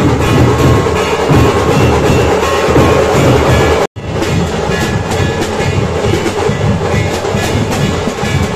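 Massed Maharashtrian dhols, steel-shelled rope-tensioned barrel drums, beaten in a loud, fast, dense, unbroken rhythm. The sound cuts out abruptly for an instant just before four seconds in, then the drumming carries on.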